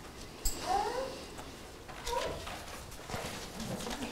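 Bible pages being turned, with light paper rustles, and a few faint, short cries that glide up and down in pitch, once near the first second and again a little after two seconds.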